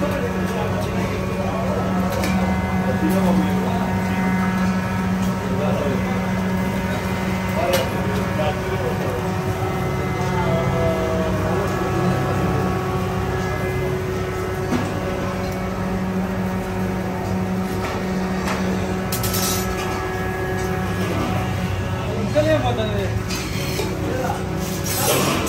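Indistinct voices talking over a steady low hum, with a few sharp clicks or clinks.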